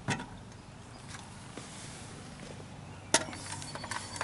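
Handling noise as a steel shaft with its impeller is pulled out of a plywood housing: a knock just after the start and a sharp click about three seconds in, with a few faint ticks between.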